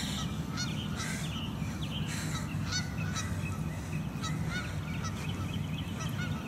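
Birds calling outdoors: short calls repeated many times, over a steady low rumble.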